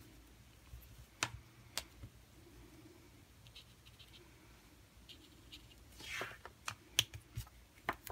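Faint, scattered clicks and taps of colouring markers and a water brush being handled on a craft desk: two sharp clicks about a second in, then a quick run of them near the end, with a brief scratchy rub just before.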